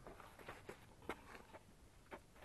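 Near silence in the open air, with a few faint clicks and knocks near the middle.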